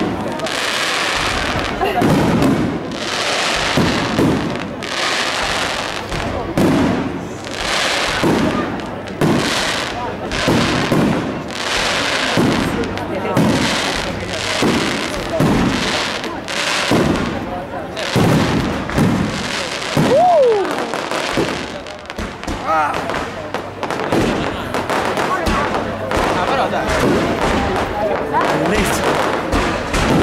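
Aerial fireworks display: shell bursts going off in a rapid run, about one sharp bang a second. In the last several seconds the bursts run together into a denser, more continuous barrage.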